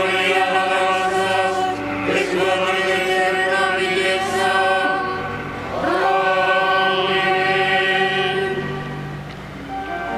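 A choir singing a slow liturgical chant in long held notes, moving to a new pitch every few seconds.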